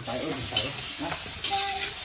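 Chicken pieces sizzling as they sauté in a wok over a wood fire, stirred with a spatula that scrapes the pan now and then.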